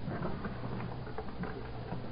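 Light, irregular clicks and rustles over a steady low hum from the recording.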